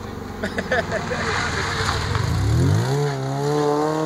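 A rally car's engine passing close by, running low at first, then pulling hard from about halfway through with its pitch climbing steadily as the car accelerates out of the corner.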